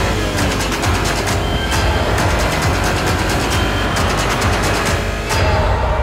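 Dramatic soundtrack music over a deep low rumble, broken by several stretches of rapid crackling.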